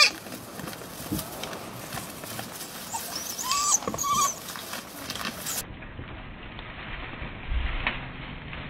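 A hare's high distress squeals, a few short bleat-like cries about three to four seconds in, as it is held by wild dogs. Rustling runs under them, with a low bump near the end.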